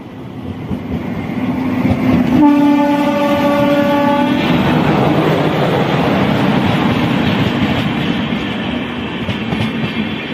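Indian Railways electric locomotive passing close by, growing louder as it approaches. Its horn sounds one steady blast of about two seconds, a little over two seconds in, and then the loud rush and rattle of wheels on the rails carries on as the train goes past.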